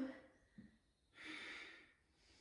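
One audible breath, a soft hiss lasting under a second, from a woman holding an inverted forearm balance, heard about halfway in.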